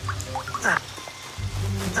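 Background score with steady low notes and a few short falling glides, over the patter of heavy rain.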